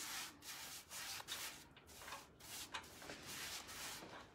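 Paintbrush stroking clear satin top coat onto a rusty metal milk can: a faint series of soft bristle-on-metal brushing strokes.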